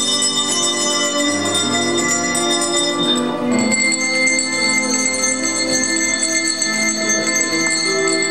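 Children's coloured handbells ringing, several sustained bell tones overlapping over a lower musical accompaniment; a new, brighter high ring enters about three and a half seconds in.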